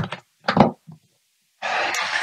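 A black plastic waterproof hard case being opened. There is a short snap about half a second in and a small click as the latches are released, then about a second of soft rushing rustle as the lid is lifted.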